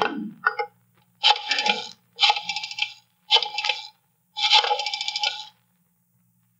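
Rotary telephone dial being turned and let run back four times: four separate bursts of rapid metallic clicking, each under a second long. A faint low hum runs underneath.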